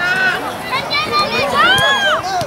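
High-pitched children's voices shouting and calling out over one another, with a loud, drawn-out call near the end.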